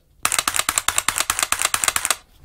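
Rapid dry-fire trigger clicks from an AR-15 fitted with a Mantis Blackbeard auto-reset system, which resets the trigger after each pull so it can be pulled again at once without live ammunition. A quick even string of sharp clicks, several a second, starting just after a short pause.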